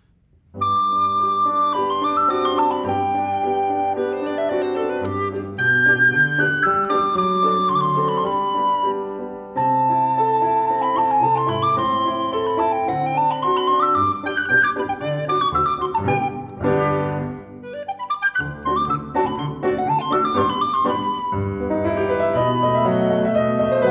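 Duo of a Mollenhauer Modern Alto recorder in G and a modern grand piano playing an early-19th-century classical piece: the recorder carries the melody with quick runs over the piano's accompaniment. The music begins about half a second in.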